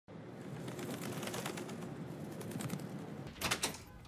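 Pigeon cooing over a steady outdoor background hiss. Near the end it gives way to quieter indoor room tone broken by two short sharp knocks.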